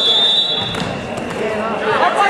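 Voices of spectators and coaches in a gymnasium during a wrestling bout, with a short, steady high tone in the first second and dull thumps near the middle.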